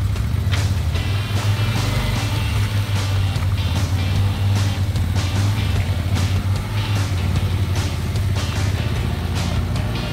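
Background music with a steady beat, over the engine of a side-by-side UTV running as it drives through mud.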